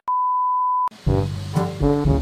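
A loud, steady, pure electronic beep held for just under a second, cutting off abruptly. About a second in, background music starts with a bass line and a brassy melody.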